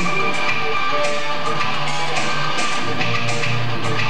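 Electric guitar played through an amplifier: a continuous run of sustained lead notes, each new note starting while the last one still rings.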